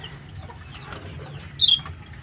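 Aviary birds calling faintly, with one louder, short, high-pitched call about a second and a half in.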